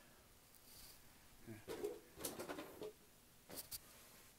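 Faint handling of a phone camera up close: soft fumbling with a low muffled vocal murmur about two seconds in, then two quick clicks near the end.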